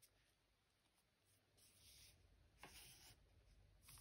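Near silence, with faint rubbing of stacked cardstock pages as they are squared up by hand, in two short spells in the middle.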